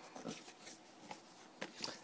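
Faint rustling and a few light clicks of a cardboard box being handled and opened, with the clicks coming closer together near the end.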